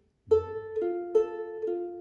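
Ukulele picked one note at a time in a simple practice exercise: after a brief silence, about four single notes are plucked at an even pace, each ringing on under the next.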